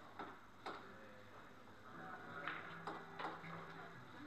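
Billiard balls clicking faintly, about five sharp knocks at irregular intervals, over a quiet room with a low hum that comes in about halfway.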